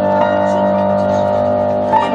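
Upright piano being played: a held chord rings on steadily, and a new note is struck near the end.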